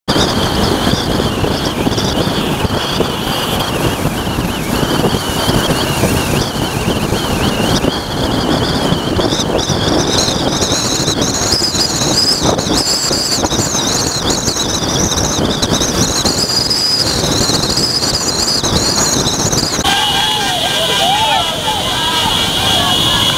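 Loud road noise of a moving convoy of cars and motorcycles, mixed with voices and a continuous high wavering squeal. The sound changes abruptly about two seconds before the end.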